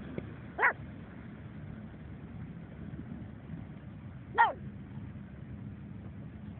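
A pug barking twice: two short barks about four seconds apart, the second louder, over steady background noise.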